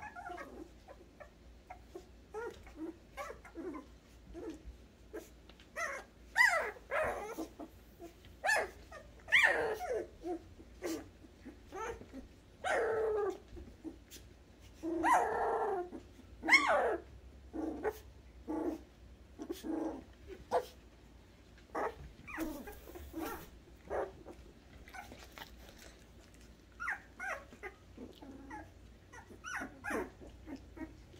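Young poodle puppies whimpering and yelping: a string of short, high cries that slide down in pitch, with a few longer whines near the middle, when the cries are loudest.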